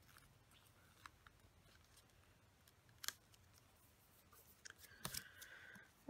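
Near silence with a few faint ticks and rustles of paper stickers being handled and pressed onto a planner page, the sharpest tick about three seconds in and a short flurry of ticks with a soft hiss near the end.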